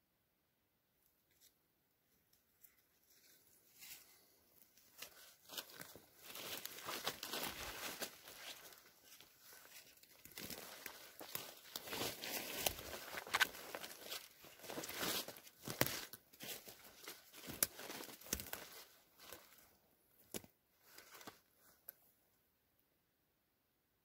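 Footsteps pushing through forest undergrowth: a rustling, crunching crackle of leaves, moss and twigs underfoot, starting a few seconds in and stopping near the end, with a few sharp clicks among the steps.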